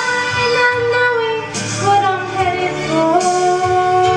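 A teenage girl singing solo into a microphone over instrumental accompaniment, holding long notes with vibrato and stepping up to a higher held note about three seconds in.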